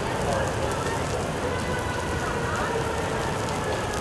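A car fire burning steadily: a dense, even hiss of flames with faint scattered crackles.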